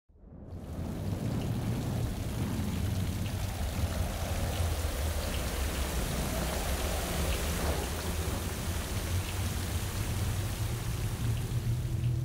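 Rain sound effect: steady heavy rainfall with a low rumble of thunder underneath, fading in over the first second.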